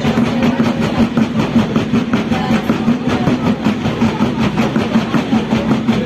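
Drum-cheer drum line playing a fast, continuous beat of rapid, evenly spaced strokes.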